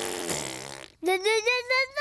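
A cartoon little girl's voice blowing a raspberry, which stops about a second in, then singing quick, high "la, la, la" notes.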